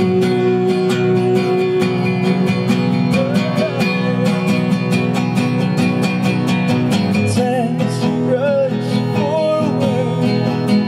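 Two acoustic guitars strummed in a steady rhythm, with a voice singing over them in the middle and again near the end.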